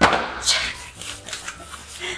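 Packaging being handled as a wrapped speaker is lifted out of its cardboard box: a sharp knock at the start, then a second scrape about half a second in and light rustling of the packing wrap and cardboard.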